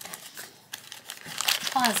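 Cardboard blind box being opened by hand, the foil bag inside crinkling and rustling in short scattered crackles. A voice comes in near the end.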